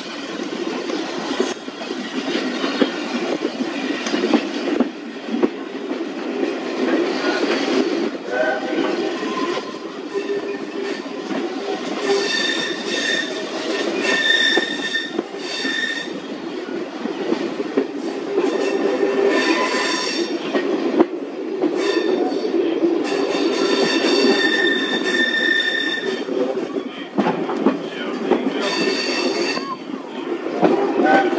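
Train carriage running along the line, heard from an open window: a steady rumble of wheels on rail, with high wheel squeal in spells of a few seconds, around the middle and again near the end.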